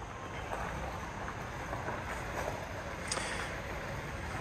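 Outdoor ambience with a steady low wind rumble on the microphone and a faint click about three seconds in.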